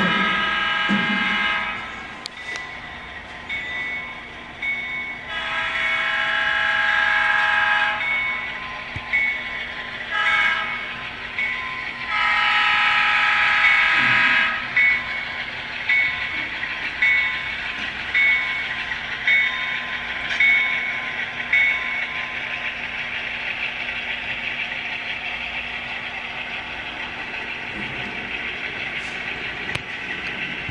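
Model Southern Pacific diesel locomotive's onboard sound system blowing its horn in the grade-crossing pattern: long, long, short, long. A bell then rings about once a second for several seconds, over a steady diesel engine hum.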